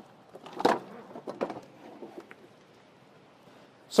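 Floor mat being lifted out of a forklift's operator compartment: a few soft knocks and scrapes of handling over the first two seconds or so.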